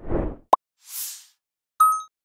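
Logo-animation sound effects: a low whoosh, a sharp short pop, a high airy swish, then a bright bell-like ding that rings on near the end.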